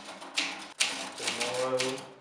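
Manual typewriter keys striking: a run of sharp, irregular clacks. A person's voice is heard briefly in the second half.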